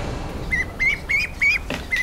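Domestic ducklings peeping: a run of five short, high calls, about three a second, starting about half a second in.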